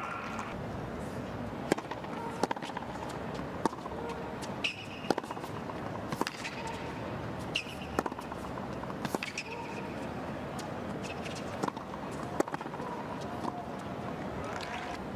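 Tennis rally on a hard court: a string of sharp pops, about one every second, as rackets strike the ball and it bounces on the court, over a steady low background hum.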